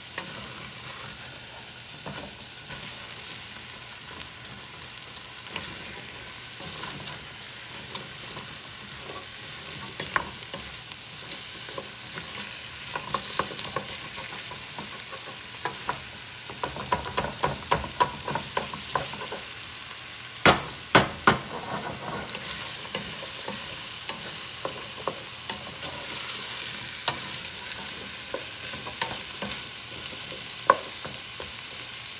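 Diced vegetables sizzling in hot oil in a stainless steel stockpot while a wooden spoon stirs them, scraping and clicking against the pot. About twenty seconds in come three sharp knocks, the loudest sounds.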